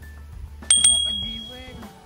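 Bell 'ding' sound effect of a subscribe-reminder animation: two quick bright metallic strikes a little under a second in, ringing out and fading over about a second, over background music.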